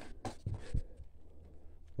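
Faint scratchy handling noise with a few soft taps in the first second.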